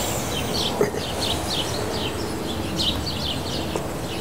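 Small birds chirping repeatedly, several short high chirps a second, over a steady low background rumble of outdoor noise. A single sharp click about a second in.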